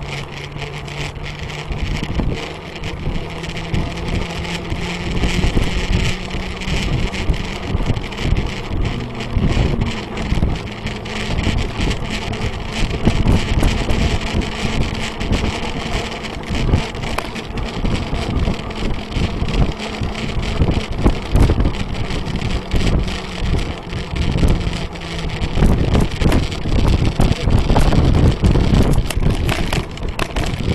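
Bicycle ride heard from a bike-mounted camera: wind buffeting the microphone over the rumble and rattle of the tyres and frame, with many small knocks from bumps. A low, steady hum drifts slightly in pitch and fades out about 25 seconds in, and the wind noise grows louder near the end.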